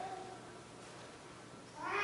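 A small child's high-pitched vocal squeal starts near the end and wavers as it runs on. Before it, the room is quiet.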